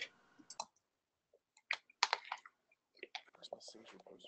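Scattered faint clicks and taps, typical of a computer mouse and keyboard in use, with a few faint voice fragments in between.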